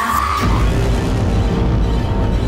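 A woman's scream, held on one high note, cuts off about half a second in and gives way to deep, low, droning horror-score music.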